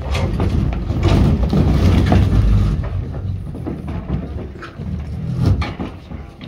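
Several metal-framed chairs being pushed back and scraped across a stage floor, with knocks and shuffling footsteps as a group of people get up from a table and move about.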